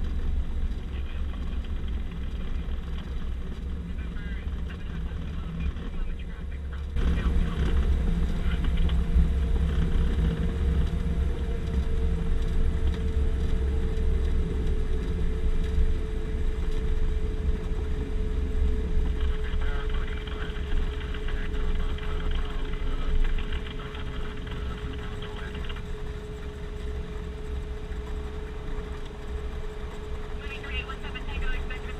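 Cockpit noise of a Piper Navajo's twin piston engines and propellers, a steady low drone during the landing roll. About seven seconds in it grows louder and a steady hum joins it.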